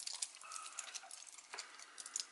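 Faint, light clicks and clinks of a solid titanium link bracelet as it is wrapped around the wrist and fastened, with one sharper click about one and a half seconds in.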